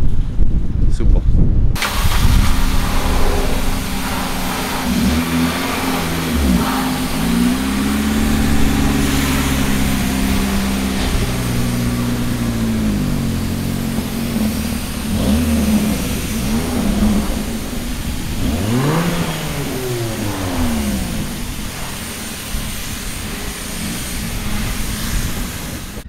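A car engine running and revving, its pitch rising and falling again and again, over loud steady road and wind noise that comes in suddenly about two seconds in.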